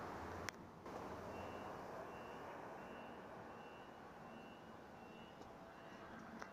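A short, high electronic beep repeating at an even pace, about one every three quarters of a second, starting just over a second in, over a steady rushing noise. A brief click comes about half a second in.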